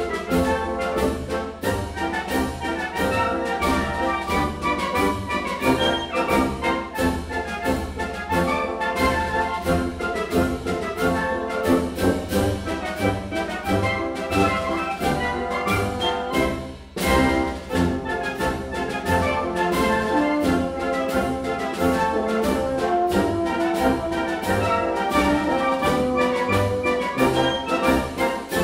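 Concert band of brass and woodwinds playing a ragtime march at sight, with a steady beat. There is a brief break about two-thirds of the way through before the band carries on.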